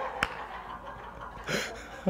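Quiet lull after laughter, with a single sharp tap about a quarter of a second in and a short breathy laugh near the end.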